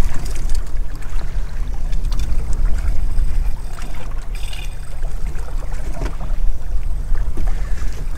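Steady low rumble of wind and sea around a small boat drifting on open water, with faint lapping of water at the hull and a few small clicks.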